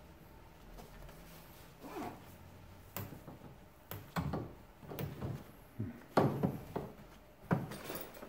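Plastic handling noises: a corrugated plastic drain hose being pushed and routed inside an air-conditioner indoor unit's cabinet, with scattered clicks, knocks and rustles, sparse at first and busier from about three seconds in.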